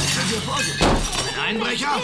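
Sound effect of glass shattering: two sharp crashes, one at the start and one just under a second in, with a person's voice sounding around them.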